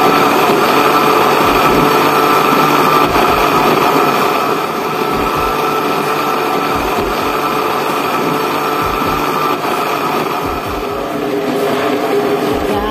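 Electric blender running steadily at speed, chopping cut bananas and banana peel.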